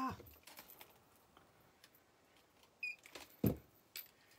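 Quiet handling of jewelry: a few faint clicks, a short high metallic clink near the three-second mark, then a single sharp thump about three and a half seconds in as the next necklace on its display card is picked up.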